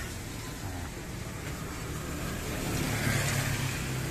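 Road traffic: a motor vehicle's engine running nearby, a steady low hum that grows louder over the last second and a half.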